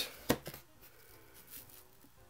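Cardboard trading cards being handled: one sharp click about a third of a second in as a card is slid off the front of the stack, then faint handling noise.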